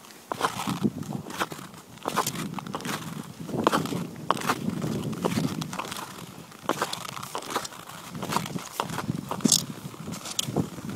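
Ice skate blades on rough, scratched natural lake ice: a series of scraping push-off strokes and gliding hisses, a stroke with each stride, uneven in rhythm, with a sharper high scrape near the end.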